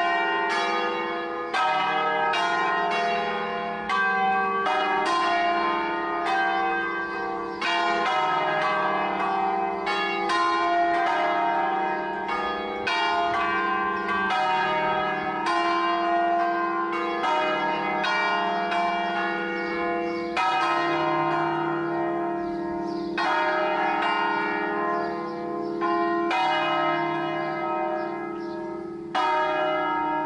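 Peal of five bronze church bells tuned in E-flat (founders Barigozzi 1890, Ottolina 1927, De Poli 1950), swung by rope on their wheels, their strokes overlapping in a continuous ringing. The strokes come thick in the first half and thin out later to one every two to three seconds over the hum of the ringing bells.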